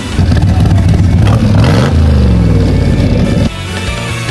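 Corvette V8 engine revving, its pitch rising and falling, with music over it. About three and a half seconds in the engine cuts off suddenly and only the music goes on.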